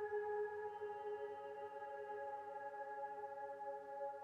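Ambient electronic music: layered, sustained drone tones held steady, with a lower tone giving way to a slightly higher one about a second in.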